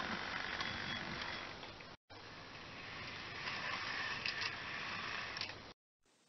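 Model railway train running along the track: a steady low rumble of the locomotive's motor and wheels with a few faint clicks. The noise drops out briefly about two seconds in and stops shortly before the end.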